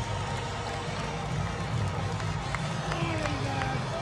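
Large football stadium crowd: a steady din of many voices, with a few single voices standing out near the end.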